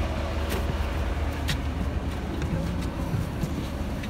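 Bus engine idling with a steady low hum, with a few light knocks of footsteps climbing the bus steps and walking onto its floor.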